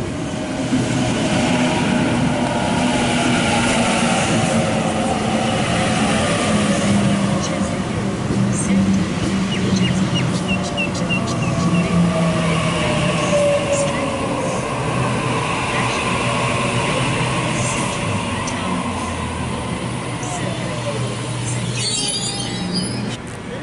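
Sydney Trains Waratah Series 1 electric train pulling into the platform and slowing to a stop: a steady electrical hum under a motor whine that falls in pitch as it slows, with a short run of high chirps about ten seconds in.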